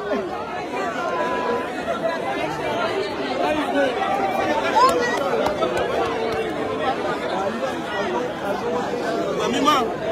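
Crowd chatter: many people talking and calling out at once, close around the microphone, with no single voice standing out.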